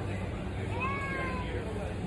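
Warehouse-store background noise with a low steady hum, and a brief high-pitched wail that rises and then falls about a second in.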